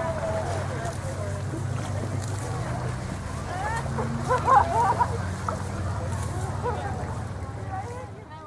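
Scattered voices over a steady low hum, with the loudest voice sounds about four to five seconds in.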